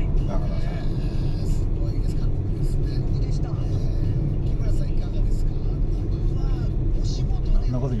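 Steady low road and engine rumble inside a moving car's cabin, with faint voices over it.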